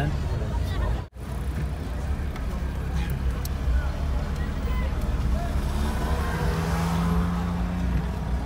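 Low, steady engine and road rumble of a car heard from inside its cabin while it drives slowly in traffic, cutting out for an instant about a second in. A steady low hum comes in near the end.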